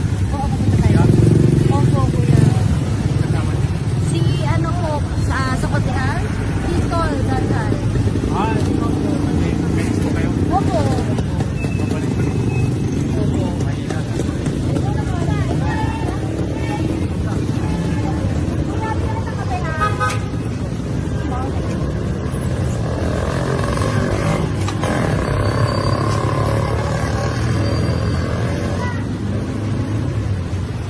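Street traffic noise: a steady low rumble of motorcycle and tricycle engines running.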